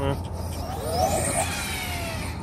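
Arrma Nero RC monster truck's brushless electric motor and drivetrain whining up in pitch under throttle as it hits the jump, then winding down in a long falling whine as the truck leaves the ground.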